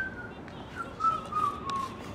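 A person whistling a few short notes, a higher one at the start, then several lower notes that fall slightly in pitch.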